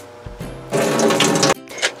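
Water running into a sink for just under a second, with a steady buzz in it, stopping abruptly.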